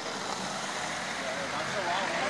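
An Audi Q7 SUV rolling slowly past at close range, a steady hiss of tyres and engine. Fans' voices call out faintly near the end.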